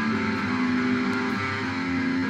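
Electric guitar playing several held chords, the notes changing a few times.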